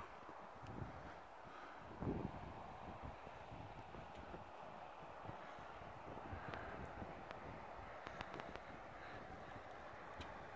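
Faint outdoor ambience: a low, even hiss of light wind, with a soft thud about two seconds in and a few small clicks, typical of a handheld phone being moved.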